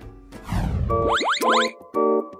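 Comedy sound effects over light background music: a long falling swoosh about half a second in, then two quick rising cartoon boings.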